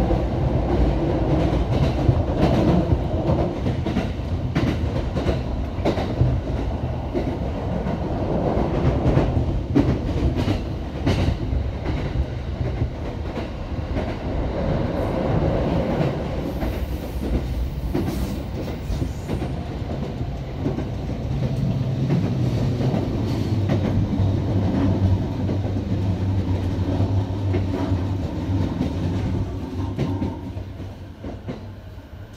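Chuo-Sobu Line local commuter train running along the line, heard from inside the car: a continuous rolling rumble with repeated wheel clicks over rail joints. A low steady hum joins in about two-thirds of the way through.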